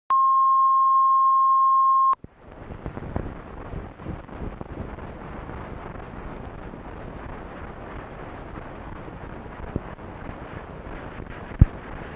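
A steady, loud beep tone of one pitch for about two seconds, cutting off abruptly: the line-up tone at the head of an old film's countdown leader. Then the hiss and crackle of the worn film soundtrack, with scattered clicks and one louder pop near the end.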